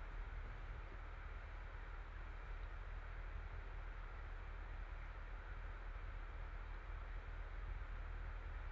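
Steady low hiss over a constant low hum, with no distinct knocks or rattles: faint background noise.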